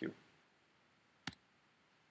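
A single sharp click about a second and a quarter in: a key or button press advancing the lecture slide.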